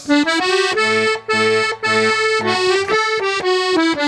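Accordion playing a short instrumental passage between sung verses: a melody of changing notes over bass notes and chords.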